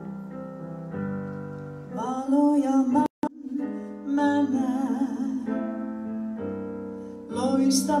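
Electric keyboard playing sustained chords, joined about two seconds in by a woman singing a hymn into a microphone. The sound cuts out completely for an instant just after three seconds.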